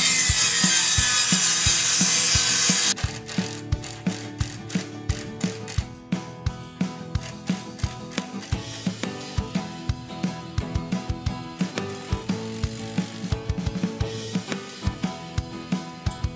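A benchtop table saw ripping a length of 2x4 pine for about the first three seconds, cutting off abruptly; then background music with a steady drum beat for the rest.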